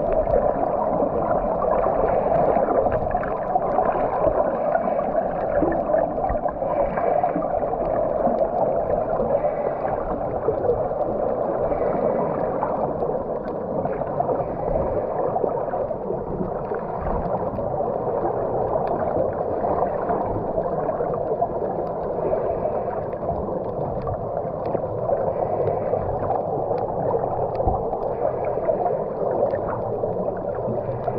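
Underwater sound picked up by a submerged camera: a steady, muffled wash of water, with a faint pulse every two to three seconds.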